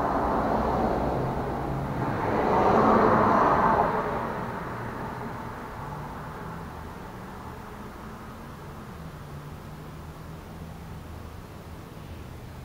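A motor vehicle passing by, its noise swelling to a peak about three seconds in and then fading away over the following few seconds, leaving a low hum.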